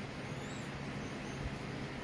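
Steady low room hum and hiss, with no distinct event apart from a faint low bump about a second and a half in.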